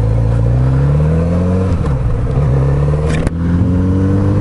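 Kawasaki Z900RS inline-four engine pulling hard through the gears: its pitch climbs, drops with an upshift a little under halfway through, climbs again, and drops with a second quick upshift near the end before rising once more. Wind noise rushes under the engine sound.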